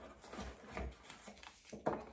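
Rustling and scraping of a cardboard box and its packaging being opened and handled, with a sharp knock near the end.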